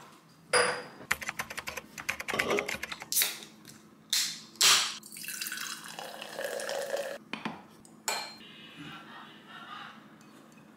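Glassware and kitchen items clinking and knocking on a hard countertop, then a canned drink poured into a glass for about two seconds, followed by a few more light knocks.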